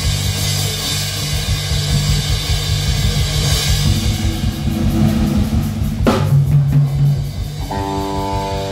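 Live rock band playing: drum kit and bass guitar with cymbals, with a loud hit about six seconds in. An electric guitar chord rings out near the end.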